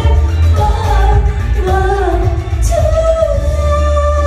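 A woman singing a fast pop song live into a handheld microphone over a backing track with a heavy bass beat. Near three seconds in she holds one long note.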